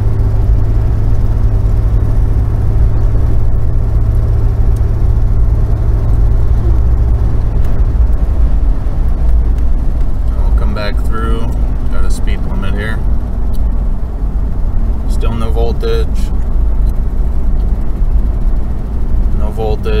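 Cabin sound of a 1991 Ford Explorer on the move: its 4.0 L V6 running at cruise under steady road noise. A steady low hum in the mix drops away about eight seconds in, and the truck slows as engine speed falls. The A4LD automatic is in what the driver takes to be overdrive.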